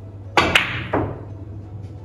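A carom billiards shot: a sharp click as the cue tip strikes the cue ball, a second sharp ball-on-ball click a fraction of a second later, then a softer knock just under a second in.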